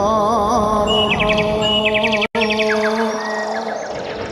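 Live jaranan ensemble music: a held melodic line that wavers at first and then settles, with rapid high chirping trills over it and a low drone beneath. The sound cuts out completely for a split second a little past halfway.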